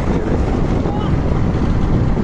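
Wind buffeting the microphone and road noise from a moving vehicle: a steady low rumble.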